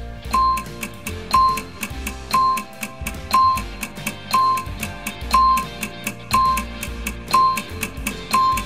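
Countdown-timer music: a short beep about once a second over a fast ticking beat and a light instrumental bed, counting down the answer time.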